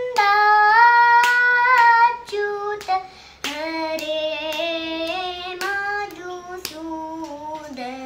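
A young girl singing Carnatic vocal in raga Sankarabharanam, holding long notes with sliding ornaments. The singing is loudest in the first two seconds, and her line moves lower about three seconds in. Soft, regular hand taps keep the beat throughout.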